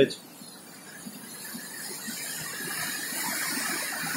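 Steady rushing of a fast mountain river, a noisy hiss with no distinct events, growing gradually louder.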